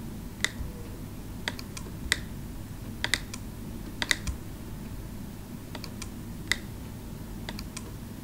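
Computer mouse buttons clicking, about a dozen sharp clicks at irregular intervals, some in quick pairs like double-clicks, over a low steady background hum.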